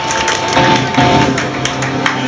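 Amplified electric guitar notes held and ringing through the amplifier, a lower note coming in about half a second in, with scattered light taps and clicks over them.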